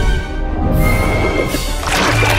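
Dramatic cartoon music with an animal-like cry from a large monster as it opens its toothy jaws.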